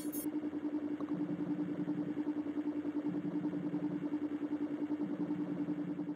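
A DVD menu's looping background sound: a steady, low, machine-like electronic hum with a quick, even pulse.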